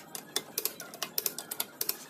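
Hand socket wrench clicking and rattling against a lug nut in quick, uneven taps, about six a second, as the nut is run onto a car wheel's stud.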